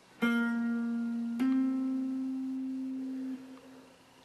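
Electric guitar tuned down a half step, one note picked on the fourth string at the ninth fret and then hammered on to the eleventh fret just over a second later. The higher note rings for about two seconds and dies away.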